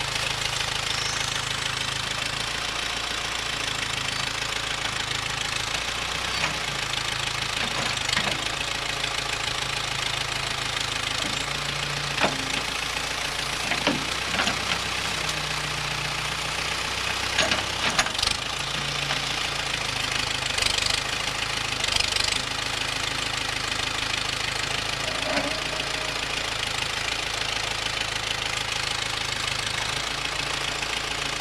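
Tractor-loader backhoe's diesel engine running steadily while the bucket digs out a muddy trench, with a handful of sharp knocks and scrapes from the bucket through the middle.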